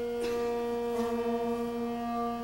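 A small wind ensemble holding a long sustained chord, with a higher note joining about a second in.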